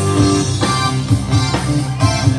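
Live band music: chords played on a Yamaha MX keyboard over heavy bass and a steady beat, with no singing yet.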